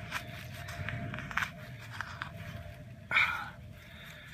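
A hand digging in soil and dry grass to free a wapato tuber: scattered crackling and scraping of stems and dirt, with a short louder rustle just after three seconds in.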